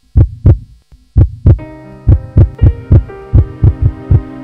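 A heartbeat sound effect: two slow double thumps, then the beat quickens to about four thumps a second over a steady low hum.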